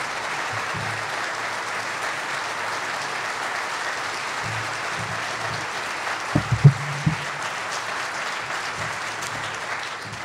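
Audience applauding steadily, with music playing underneath. A few sharp thumps about six and a half seconds in are the loudest moments.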